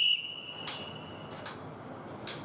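A workout interval timer beeping to start the round: one high, steady electronic tone, loud at first and then held faintly for about a second and a half. A couple of light knocks come about a second apart.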